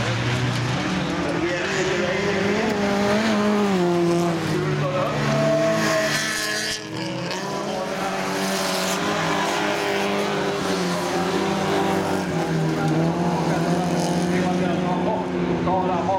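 Folkrace cars' engines running at high revs on a gravel track, the engine notes rising and falling as the cars accelerate and shift, with a short drop in level about seven seconds in.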